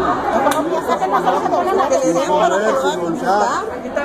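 Several people talking over one another at once, mostly women's voices.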